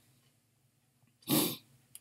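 A man coughs once, briefly, about a second and a half in.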